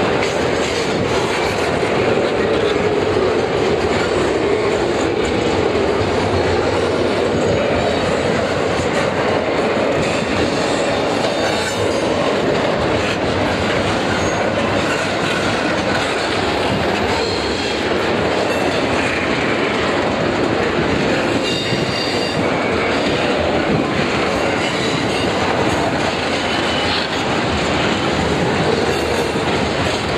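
A CN double-stack intermodal train's well cars rolling past at close range: a steady loud rolling noise of steel wheels on rail, with brief faint high wheel squeals around the middle.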